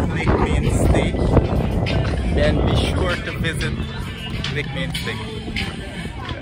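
Background music with a voice over it. The voice drops away about halfway through, leaving the music a little quieter over a low rumble.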